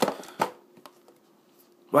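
Cardboard trading-card blaster box knocking against a countertop as it is turned over by hand: two sharp taps about half a second apart, then a faint tick, over a faint steady hum.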